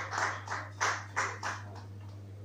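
Scattered clapping from a small audience, a few claps a second at an uneven pace, thinning out and stopping about three-quarters of the way through.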